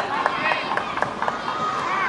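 Spectators clapping in a quick, even rhythm of about four claps a second that fades after a second and a half, over shouting and cheering voices.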